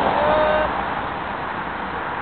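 Steady outdoor street noise, a continuous even rush, with a short faint voice-like tone in the first second.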